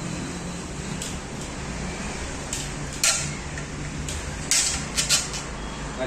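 Metal laptop-tray parts of a monitor arm stand being handled on a workbench: a few sharp clicks and knocks, the loudest about three seconds in and three quick ones near the end, over a steady background noise.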